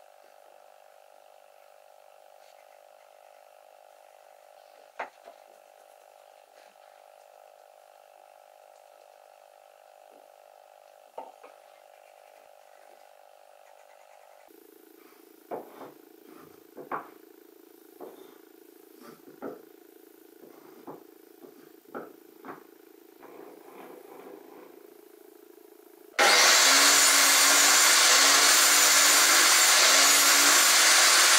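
Quiet workshop with a few small taps and knocks of pencil, square and pine blocks on the bench while the wood is marked out. Near the end a bandsaw switches on and runs steadily and loudly, a dense whirring hiss over a low motor hum.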